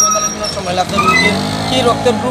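A motor vehicle engine running close by and rising in pitch in the second half, under a man talking.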